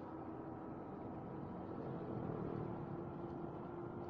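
KYMCO Super8 scooter being ridden at a steady pace: its engine and the road noise make an even drone with a faint constant hum.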